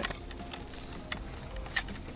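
A few faint metallic clicks as an en-bloc clip of cartridges is lined up and pressed down into an M1 Garand's open action, over a low, steady background.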